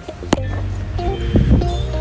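One sharp hammer blow about a third of a second in, the sharp end of a hammer driven at full force into a charged lithium NMC pouch cell, over background music.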